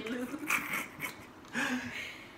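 Soft laughter and brief, quiet vocal sounds from two people, in three short bursts: about half a second in, a second in, and near the end.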